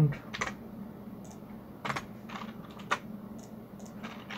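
Computer keyboard typing: a handful of separate keystrokes at an uneven pace, the sharpest about three seconds in.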